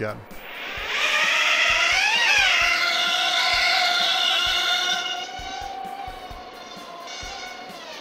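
Hubsan H107C micro-quadcopter motors and propellers spinning up with a rising whine, then holding a steady whine that gets quieter after about five seconds. This is the test run with all four motors now wired correctly.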